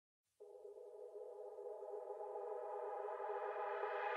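Electronic background music: after a moment of silence, a held synthesizer chord fades in about half a second in and slowly swells louder.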